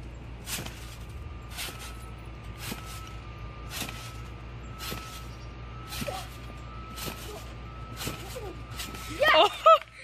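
A boy jumping on a trampoline, landing on the mat with a sharp thump about once a second, nine bounces in a row. A boy shouts near the end.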